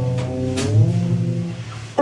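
Live jazz band playing: horn lines sliding in pitch over a double bass, with a cymbal hit about a third of the way through. The sound thins out just before the end, then the full band comes back in.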